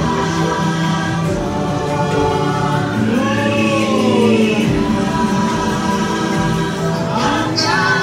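The ride's soundtrack: a wordless choir singing held, slowly moving notes over an ambient musical score, with a high rising sweep shortly before the end.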